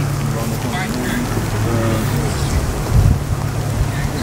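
Wind buffeting the microphone in a steady low rumble, with a stronger gust about three seconds in, under faint voices of a group talking.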